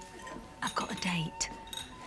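Café crockery and cutlery clinking, a few light clinks about halfway through, with a brief snatch of voice in the background.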